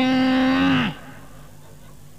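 A man's voice holding one long drawn-out vowel on a steady pitch for about a second, ending with a slight drop, then a pause.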